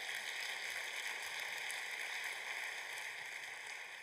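Steady, even hiss of room noise, with no voices and no distinct events.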